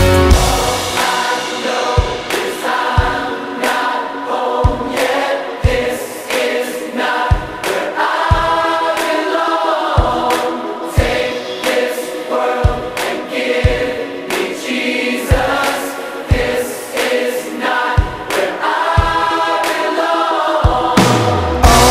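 Music: a choir singing over instrumental accompaniment, with a low beat about once a second.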